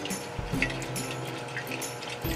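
Water sloshing in a glass mason jar as soaked radish seeds are swished around to rinse them, over soft background music.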